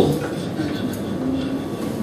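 Steady noise of a hall heard through the microphone, with a faint voice briefly audible.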